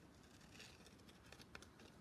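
Faint snips of small scissors cutting a paper flower shape: a few soft clicks over near silence.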